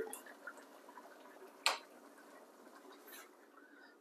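Quiet room tone with one short, sharp click a little under two seconds in and a few fainter ticks around it.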